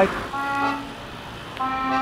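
Accordion music: two held notes, each under a second long, over a low traffic rumble.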